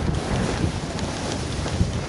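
Wind buffeting the microphone of a body-worn camera as a skier moves downhill, a steady rumbling rush, with skis running over snow underneath.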